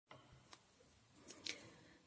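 Near silence with a few faint, brief rustles and clicks, the loudest two about a second and a half in, as a hand picks up and turns a ball of yarn.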